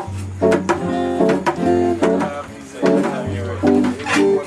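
Guitar music: strummed chords over a bass line, each chord changing about once a second.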